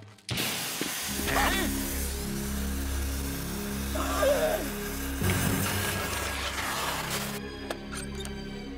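Cartoon soundtrack: music under a long, even hiss that starts suddenly just after the start and cuts off near the end. A cartoon dog whimpers briefly twice, with short wavering cries.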